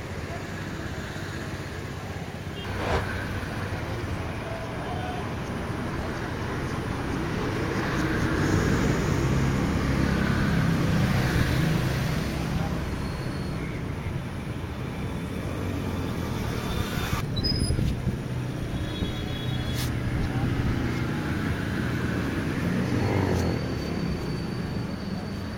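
Road traffic: motor vehicles and motorbikes running past in a steady rumble, with indistinct voices. A single sharp knock sounds about three seconds in.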